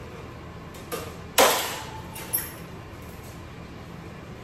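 Clanking of a rigid metal sterilization container's lid and filter plate being handled: a light click, then one sharp metallic knock about a second and a half in that rings briefly, and a smaller click a second later.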